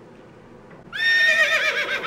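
A woman breaks into a high-pitched laugh about a second in. It starts on a rising note and then warbles up and down, much like a horse's whinny.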